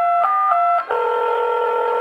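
Recorded dance music: an electronic keyboard or organ-like synth plays a few short stepping notes, then holds one steady chord from about a second in.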